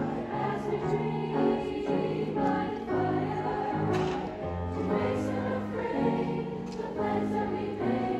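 Mixed choir singing held chords with piano accompaniment.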